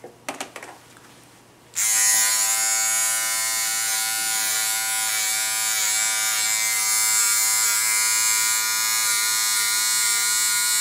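Small Wahl hair clipper switched on about two seconds in, then buzzing steadily while it is run over the hair at the nape of the neck. A few light handling clicks come just before it starts.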